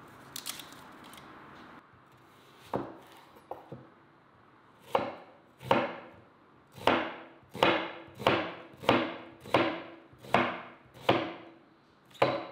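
Kitchen knife cutting an onion and knocking on a wooden cutting board: a few scattered cuts at first, then from about halfway a steady run of chops, roughly three every two seconds.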